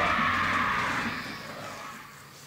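The end of a sung song in praise of the leader, its sound fading away over about a second and a half.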